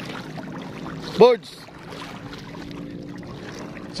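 Steady low hum of a distant boat engine running, with one short, loud vocal shout about a second in.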